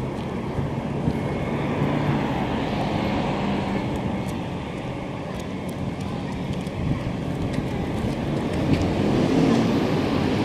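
Steady city street noise with a low traffic hum and a few faint small ticks.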